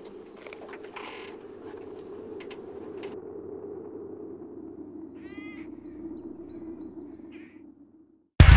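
A crow caws once, a harsh call a little past the middle, over a steady low outdoor hum. A shorter call follows near the end, then the sound cuts out.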